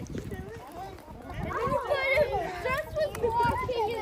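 Several young children talking and exclaiming over one another in high voices. The chatter grows busier and louder after about a second and a half.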